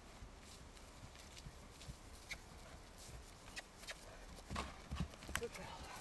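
Faint hoofbeats of a horse trotting on grass beside a running person: scattered soft thuds and clicks, louder about four and a half seconds in.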